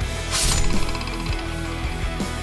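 A whoosh, then a fast, even metallic rattle lasting about a second, like a chain being swung, over background music.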